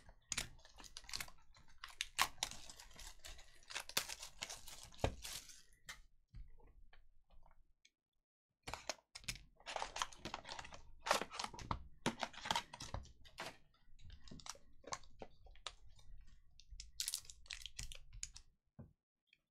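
A cardboard trading-card box and the foil card packs inside it being handled, with crinkling and quick scraping clicks. There is a short break about six seconds in.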